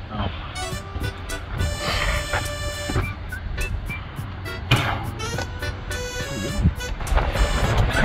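Wind buffeting the microphone, a steady low rumble, with background music over it.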